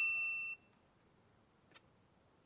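A steady, high electronic beep tone that cuts off about half a second in, followed by near silence with one faint click shortly before the end.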